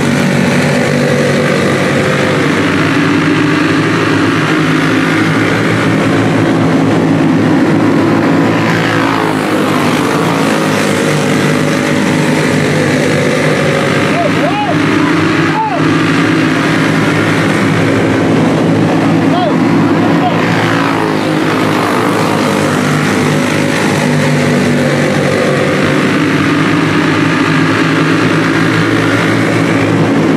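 A pack of dirt-track racing karts with single-cylinder four-stroke clone engines running hard together as they lap the track, a steady overlapping engine drone. Around the middle a few engine notes briefly dip and rise in pitch as karts pass close.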